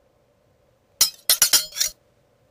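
About five sharp, bright clinks in quick succession, starting about a second in and stopping abruptly before two seconds.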